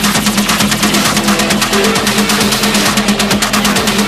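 Hard techno from a DJ mix: a rapid, rattling run of percussion hits over a steady droning tone, with little deep bass under it.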